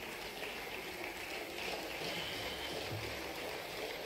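Steady faint room noise of a large assembly hall: an even hiss with no distinct event.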